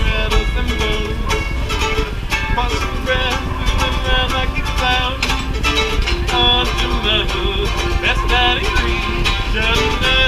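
Banjo music: a run of quickly plucked notes.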